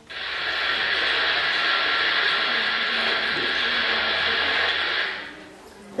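Rushing-water sound effect played with a presentation slide through the hall's speakers: a steady, loud hiss that starts suddenly and fades out about five seconds in.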